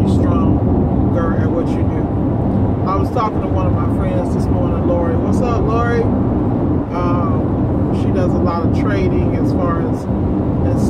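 A woman talking inside the cab of a cargo van, over the van's steady engine and road noise.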